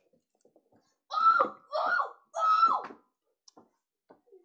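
A child's voice making three short, high-pitched calls in a row, each held on one pitch and dropping at the end, followed by a few faint clicks.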